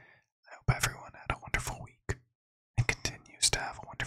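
Close-miked whispered speech from a man, with a brief pause about two seconds in.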